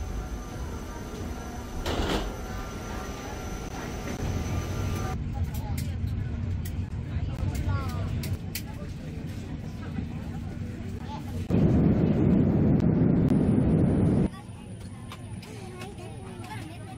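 Ambient noise of passengers boarding an airliner, with background voices. Near the end comes a loud, steady rush of noise lasting about three seconds that cuts off suddenly.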